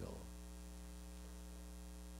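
Steady electrical mains hum from the microphone and sound system: a low, even buzz made of a ladder of level tones that does not change.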